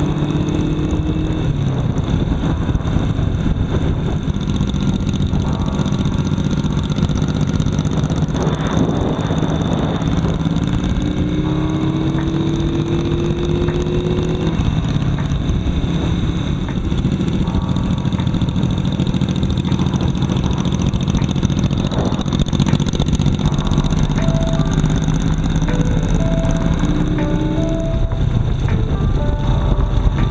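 Motorcycle running at road speed with steady wind and road noise, and music playing from the bike's speaker.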